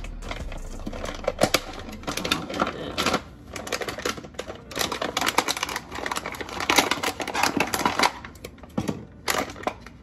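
Plastic packaging crinkling and crackling in a dense, irregular run as soft tortilla bowls are pulled out of their bag and handled.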